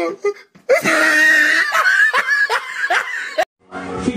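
A person laughing in a run of high-pitched bursts that breaks off suddenly near the end.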